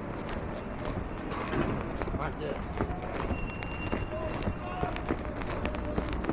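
Footsteps on a concrete sidewalk as someone walks, over a steady city traffic rumble and indistinct voices. A thin high steady tone sounds for about a second and a half around the middle.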